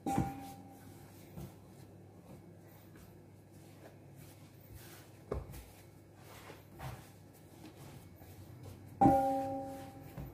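Dough being kneaded by hand on a stone counter, with a few soft thumps. A loud ringing tone sounds right at the start and again about nine seconds in, each fading over about a second.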